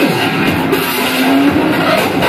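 Loud, dense noise music played live: a thick wall of sound, with a pitched tone sliding down right at the start and a steady held tone entering about a second in.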